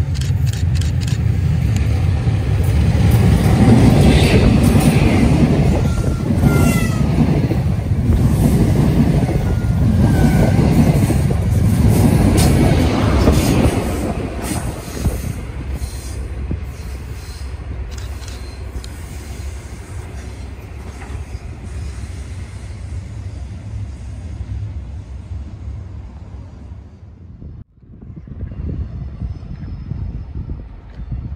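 A High Speed Train with Class 43 diesel power cars approaches and passes, its engine and wheels on the rails making a heavy rumble. The rumble is loudest from about three to thirteen seconds in, with a few brief high squeals, then fades to a lower, steadier rumble before a sudden cut near the end.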